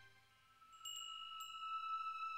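Soft chime struck twice, about a second in and again half a second later, after a moment of silence; its few high, bell-like tones ring on steadily as part of the music.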